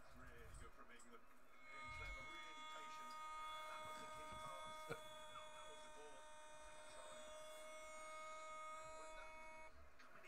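A faint steady buzzing tone made of several pitches together, starting about a second and a half in and cutting off suddenly just before the end, with a single click about halfway through.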